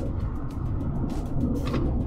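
Steady low rumble of road and tyre noise inside the cabin of a moving all-electric people mover, the LDV Mifa 9, with no engine note.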